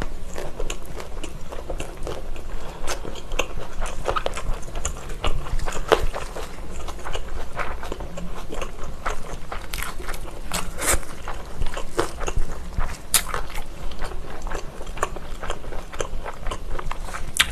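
Close-up chewing of a thick seaweed-wrapped gimbap roll, with many small crackly clicks throughout.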